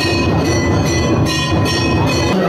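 Temple bells ringing continuously, struck in a steady rhythm, over loud ceremonial music during a puja with a lamp offering.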